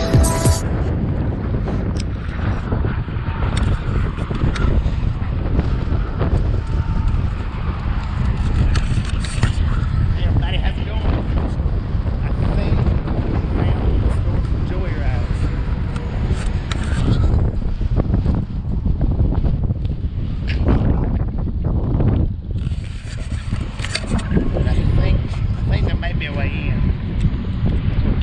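Wind buffeting the microphone: a steady low rumble that rises and falls.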